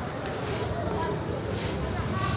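Outdoor street ambience: a motor scooter passing close by, with background voices and a thin, steady high-pitched whine.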